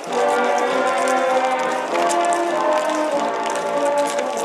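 A band playing march music, with long held notes that change every second or so.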